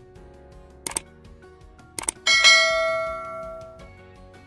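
Two short clicks about a second apart, then a bright bell ding that rings out and fades over about a second and a half. These are the stock sound effects of a subscribe-button animation, the cursor click and the notification bell, over faint background music.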